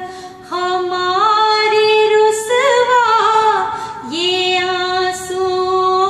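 A woman singing a Hindi film song solo into a handheld microphone, in long held notes with short breaks between phrases.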